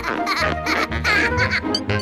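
Cartoon cockroach character laughing in quick high bursts over background music.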